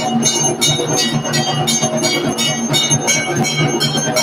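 Puja bells ringing in a steady rhythm of about three strikes a second, over a steady low tone.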